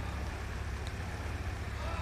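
Steady low rumble of outdoor street background noise, with no distinct event standing out.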